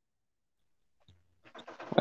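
Dead silence for about a second and a half, then a live microphone's faint low hum and room noise come in with a few soft clicks, just ahead of a voice.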